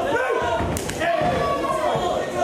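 A single sharp smack of a kickboxing strike landing about a second in, over shouting voices from the crowd and corners in a large hall.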